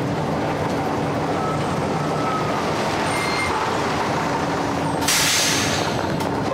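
Diesel engines of double-decker buses running steadily in a bus garage, with a short, loud hiss of released air from an air brake about five seconds in.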